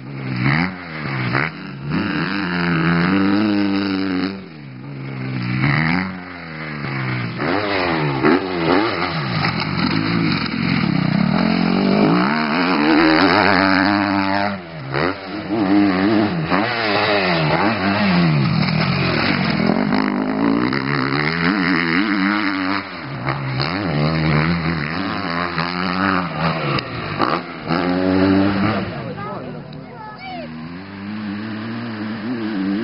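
KTM motocross bike's engine revving hard and shifting through the gears around a dirt track, its pitch repeatedly climbing and dropping, briefly fading about four seconds in and again around fifteen seconds.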